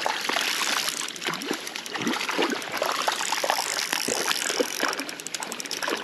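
Hooked char thrashing at the water's surface near the bank, with irregular splashes and slaps as it is brought to a landing net.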